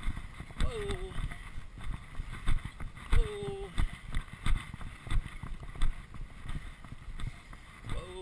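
Hoofbeats of a Thoroughbred racehorse moving on a dirt racetrack, heard from a camera strapped to the rider's chest: regular thuds of her strides with rustling and jostling of the rig.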